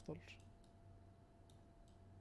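Near silence with a faint steady hum, and two faint clicks of a computer mouse, about half a second in and again about a second and a half in.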